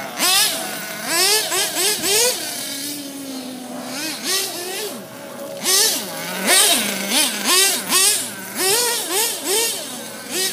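Small nitro engine of an RC buggy revving up and down in quick throttle bursts, its high buzzing pitch swooping up and falling again many times. It holds a steadier note for about a second a little before the middle.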